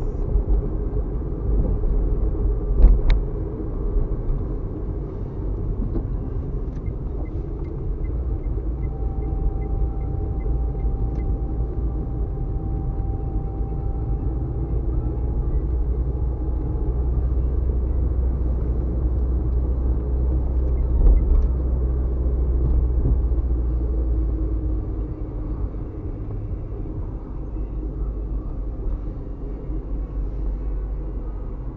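Steady low rumble of a car's engine and tyres heard from inside the cabin while driving, with a single sharp knock about three seconds in.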